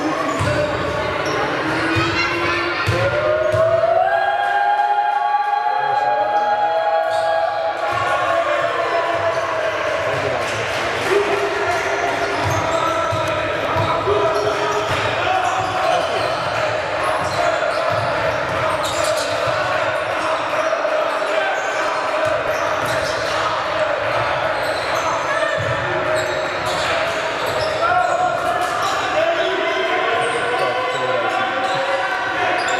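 Basketball bouncing on a hardwood gym floor during play, with voices calling out and the hall's echo.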